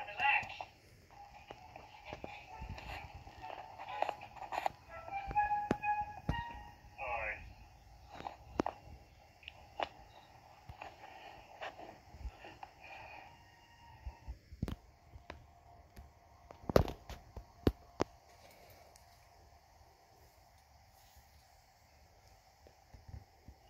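Cartoon soundtrack playing from a TV, with music and character sounds in the first part. From about 14 s in it is quieter, and sharp clicks and knocks run through the whole stretch, the loudest about 17 s in.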